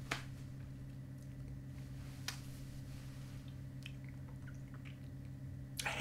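Faint, scattered wet mouth clicks as a mouthful of moist chewing-tobacco bits is squeezed and worked in the mouth, over a steady low hum.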